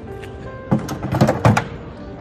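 A Hobie pedal fin drive unit being set back into its well in the board's hull, giving a burst of clattering knocks about a second long that begins a little before the one-second mark. Steady background music plays underneath.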